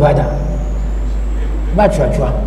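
A short pause in a man's speech, filled by a steady low hum with a faint thin high whine that rises slightly; his voice picks up again near the end.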